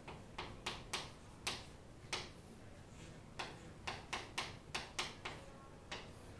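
Chalk writing on a blackboard: about a dozen short, sharp taps and scrapes of the chalk stick, a few spaced strokes at first, then a quicker run of strokes from about three and a half seconds in.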